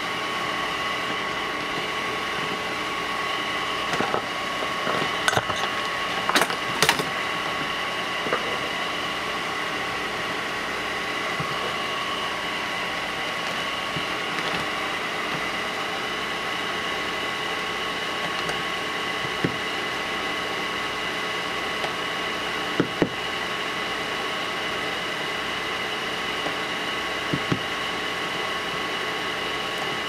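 Steady whirring hum of a small bench fan with a fixed whine, under light clicks and taps from handling an e-bike controller circuit board and soldering tool. The clicks are clustered about four to seven seconds in, with a few single ones later.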